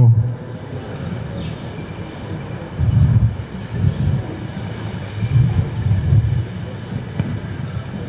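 Steady rushing noise, like wind on the microphone, with faint muffled voices in the background a few times.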